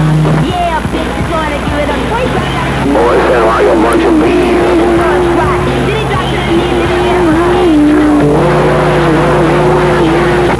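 CB radio on receive, playing a jumble of overlapping distant stations: garbled voices under static with steady whistling tones that shift pitch in steps.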